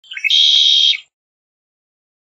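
Red-winged blackbird song: a few short opening notes, then a buzzy trill, about a second long, sung once.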